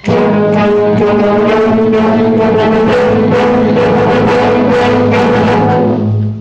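School concert band playing four measures at a tempo of 77, loud and close, in sustained chords that cut off together at the end.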